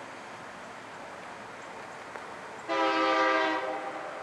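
Air horn of a KCS EMD SD70MAC diesel locomotive leading a freight train: one blast of a little over a second, a chord of several tones, starting near three seconds in over faint steady background noise.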